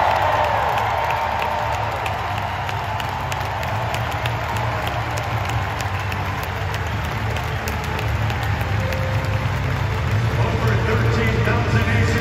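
Large arena crowd cheering and clapping with many close hand claps, over a steady low bass line of music from the public-address system.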